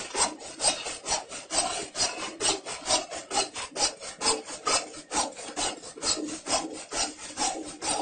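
A fast, even run of rasping strokes, about four to five a second, like something being rubbed or scraped over and over.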